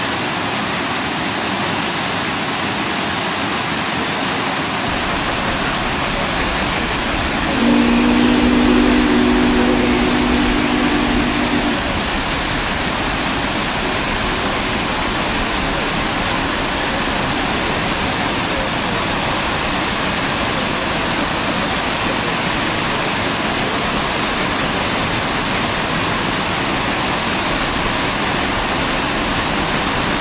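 Wide waterfall pouring into a pool, a loud steady rush of water. About a quarter of the way in, a low steady hum sounds over it for about four seconds.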